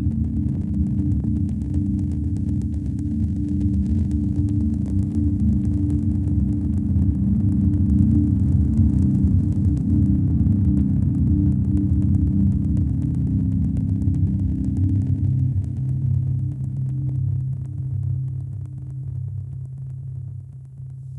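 Low, rumbling electronic drone closing an ambient piece of music. It thins out about three-quarters of the way through and then begins to fade out.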